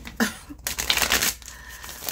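A deck of tarot cards being shuffled by hand, a dense papery flurry of cards sliding and flapping against each other for just under a second around the middle.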